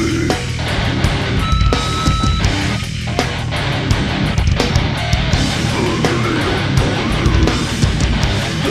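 Live heavy band playing loud distorted electric guitars, bass and drum kit, heard as a multitrack mix from the mixing board, with no vocals. A brief high held guitar note rings out about a second and a half in.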